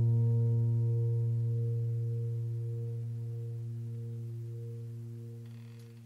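Background music ending on one low sustained keyboard chord that rings on and slowly fades away. A faint swish comes near the end.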